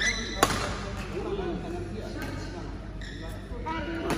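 Badminton racket striking the shuttlecock once with a sharp crack about half a second in, an overhead shot, echoing in a large sports hall, with voices around it.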